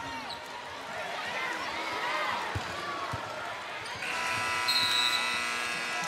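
Arena basketball sounds: crowd noise and a couple of ball bounces on the hardwood, then about four seconds in the end-of-quarter horn sounds, a steady buzzing tone lasting about two seconds.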